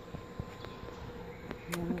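A faint steady buzzing hum held at one pitch, with a few light clicks; a woman starts speaking near the end.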